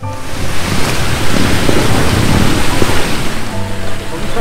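A loud, steady rushing noise that starts abruptly, with background music faintly beneath it and its notes coming through again near the end.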